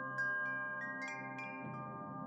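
Wind chimes ringing: a handful of high, clear notes struck one after another, each ringing on, over a soft, steady background music pad.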